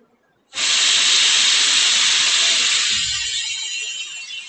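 A loud, steady hiss starts suddenly about half a second in and eases off slightly near the end.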